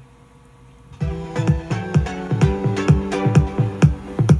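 Music with a steady beat played back from a freshly recorded cassette on a Pioneer CT-F500 tape deck through small Bose speakers, starting about a second in after a moment of faint hiss. The playback sounds good.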